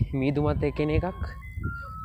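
A man's voice for about a second, then a simple electronic tune of single pure notes stepping up and down in pitch, like an ice-cream-van jingle.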